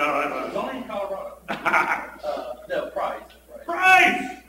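Speech only: a person talking in a meeting room.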